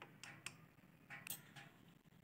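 Faint, scattered clicks and soft ticks from minced meat being mixed with spices in a plastic bowl, a few in the first second and a half.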